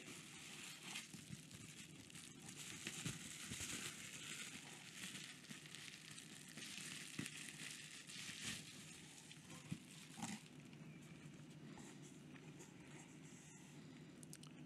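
Faint crinkling and rustling of plastic bubble wrap as it is handled and unwrapped, with a few small clicks. It is busiest in the first two-thirds and quieter near the end.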